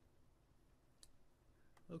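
A single computer mouse click about halfway through, with near silence around it; a fainter click follows near the end.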